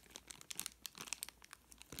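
Faint, irregular crinkling of a small clear plastic bag being handled in the fingers, made of scattered light crackles.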